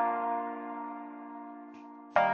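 A single sustained chord from an AAS Player software instrument, struck just before and fading slowly. It is played back from a chord progression in the FL Studio piano roll.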